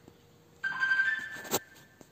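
A short electronic chime of a few steady tones, about a second long, starting suddenly about half a second in and ending in a sharp click.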